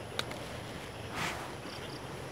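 Faint rustle of a hand pulling dried petals off a spent dragon fruit flower: a light click just after the start, then a brief soft rustle about a second in, over a quiet outdoor background.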